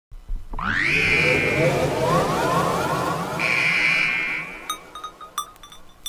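Intro of a hardtek (tekno) electronic track with no beat yet: a synth sound sweeps up in pitch and holds a high tone over a dense electronic texture, and a second high tone comes in partway through. Near the end it thins out to a few short sharp clicks.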